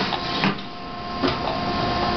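Bottle blow-molding machine running with a steady hum, broken by a few sharp mechanical clicks about half a second to a second apart.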